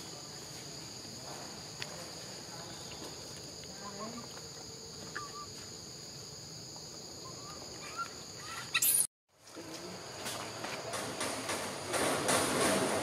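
A steady high insect chorus holding two even tones, with a few faint short chirps over it. Just after nine seconds a brief loud noise is followed by a sudden cut-out, then a louder rustling noise with many small clicks.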